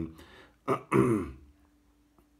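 A man clears his throat with a short voiced grunt about a second in; after it there is a faint steady hum with a couple of soft clicks.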